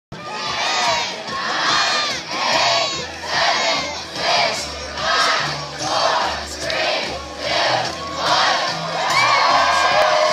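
A big crowd of runners shouting in unison, about ten rhythmic chanted calls a little under a second apart, typical of a countdown to a race start, then breaking into continuous cheering near the end as the race begins.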